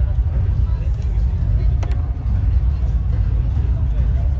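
Voices of people talking over a steady low rumble, with one sharp crack of a firework about two seconds in.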